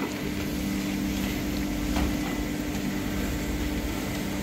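Steady mechanical hum of factory machinery, a constant low drone with two steady tones under an even noise.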